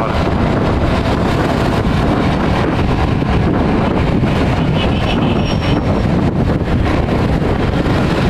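Kasinski Comet GTR 650 V-twin engine running at a steady cruising speed, under heavy wind rush over the helmet-mounted microphone. The sound is a loud, even noise with no changes.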